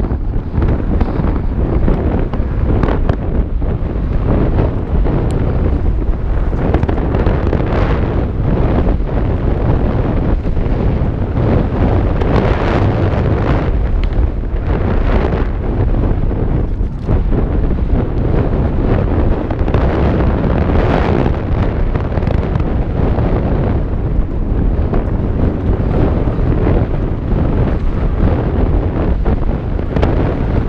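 Wind buffeting a helmet-mounted action camera's microphone on a fast mountain-bike descent, a loud steady rumble, broken by frequent knocks and rattles of the bike and tyres over rough dirt.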